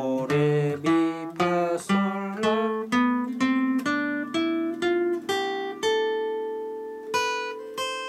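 Steel-string acoustic guitar played with the fingers, single notes of a scale in the F minor key plucked one after another and climbing in pitch. The last few notes are left to ring longer.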